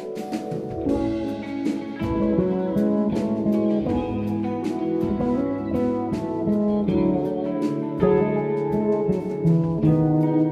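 Live band playing an instrumental jazz piece: electric guitar over bass, keyboards and drums, with cymbal strikes keeping an even beat.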